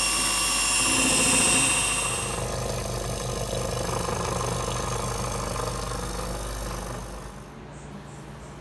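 1930s electric stand mixer running, its motor giving a high-pitched whine as the beaters work waffle batter. After about two and a half seconds the sound gives way to a quieter, lower motor hum, which drops away further near the end.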